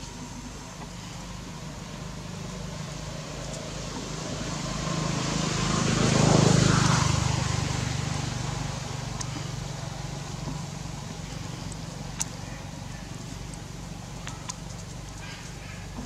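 A motor vehicle passing by: its engine sound swells over several seconds, peaks about six seconds in, then slowly fades away.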